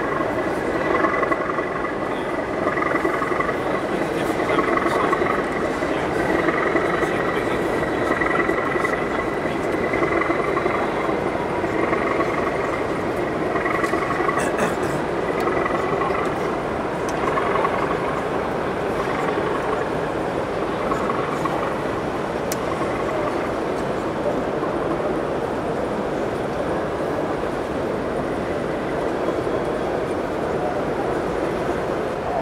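Sound-fitted model British Rail diesel locomotive playing its engine roar through its onboard speaker as it runs in with a train of coal wagons, fading as it moves away about halfway through. Behind it is the steady chatter of an exhibition-hall crowd.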